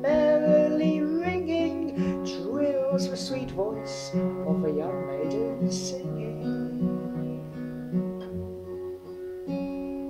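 Acoustic guitar strumming an instrumental break in three-four waltz time, the chords changing about once a second. A sung note carries over the first moment.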